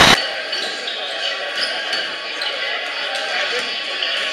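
Gymnasium background noise: echoing crowd chatter in a large hall, with basketballs bouncing now and then. A loud burst of noise cuts off abruptly at the very start.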